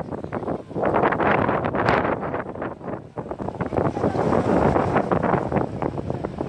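Wind buffeting the microphone, a loud, uneven rumble that rises and falls in gusts.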